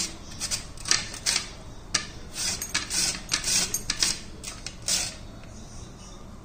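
Peeled raw sweet potato grated on the coarse side of a flat stainless steel grater: rasping strokes, about two a second, that stop about five seconds in.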